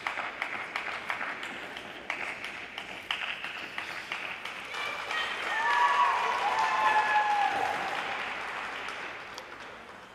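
Small audience applauding at the end of a figure skating program, with whooping cheers over the clapping. It swells to its loudest about halfway through, then fades away.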